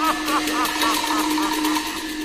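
Teochew opera accompaniment: a fast run of percussion clicks over a held low tone and a warbling pitched line that fades away.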